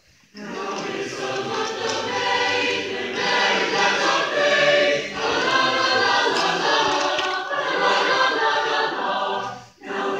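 A high school chamber choir of mixed men's and women's voices singing in sustained chords. The singing begins about a third of a second in and pauses briefly for a breath just before the end.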